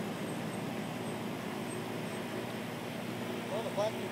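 Steady low mechanical hum with a few fixed tones, like an idling engine or running machine. A few short rising squeaky glides come near the end.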